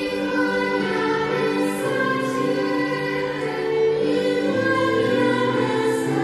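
Young choir singing a slow piece in sustained, held notes, accompanied by two violins.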